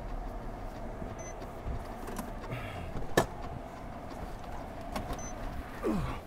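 Ford police sedan rolling to a stop, its engine running, with a sharp click about three seconds in and the driver's door opening near the end.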